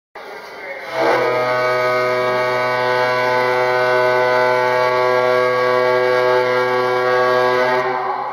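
The ferry Kittitas's horn sounding one long, steady blast, a deep tone rich in overtones. It starts softly and comes up to full strength about a second in.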